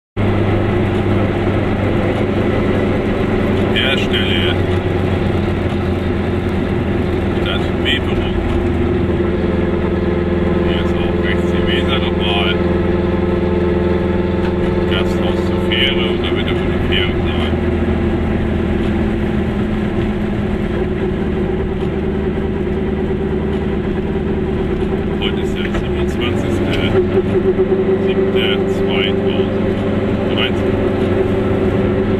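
Car engine and road noise heard from inside the cabin while driving, a steady hum whose note shifts a few times as the speed changes.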